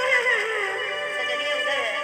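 Live stage singing over sustained keyboard notes through a PA: a high voice sings a wavering, ornamented line that slides downward near the end.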